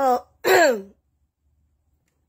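Speech only: a woman's voice makes two short utterances in the first second, the second falling in pitch, then pauses.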